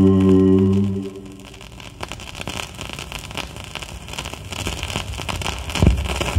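The last sung doo-wop chord of the record is held and cuts off about a second in. After it comes the crackle and hiss of the 78 rpm shellac's surface under the stylus, with scattered small clicks and a low thump near the end. Everything is heard through a loudspeaker.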